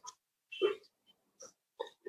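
A short, faint breathing sound from the reader pausing between lines, about half a second in, then a tiny click near the end; otherwise near silence.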